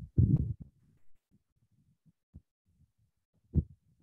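A pause between spoken sentences over a video call: a short low voice sound at the very start, then near quiet with a few faint low thumps and one louder short low thump just before the end.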